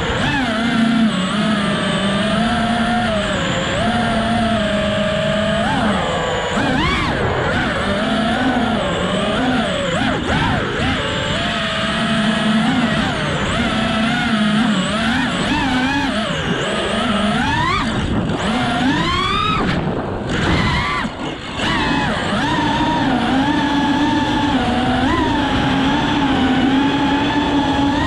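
FPV freestyle quadcopter's brushless motors and propellers, a steady pitched whine that rises and falls with the throttle. Several sharp rising sweeps come near the middle, then the sound drops out briefly before resuming.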